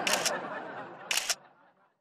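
Camera shutter sound of a phone selfie being taken, clicking twice about a second apart.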